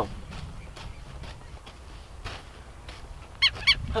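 Hoe blade chopping weeds out of loose soil in a few soft, scattered strikes. Near the end a bird gives a quick series of high, repeated calls.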